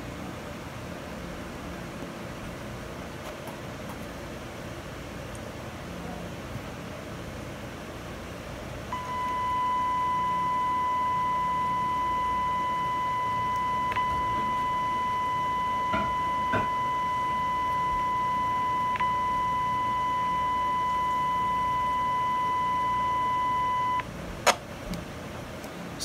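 A steady audio test tone of about 1 kHz with fainter overtones, used to modulate a CB radio transmission, comes on about nine seconds in, holds evenly for about fifteen seconds and cuts off suddenly. Before it there is only low background hum, and a sharp click follows shortly after it stops.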